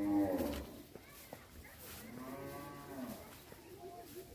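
Cattle mooing: a short loud call at the start, then a longer call about two seconds in that rises and falls in pitch.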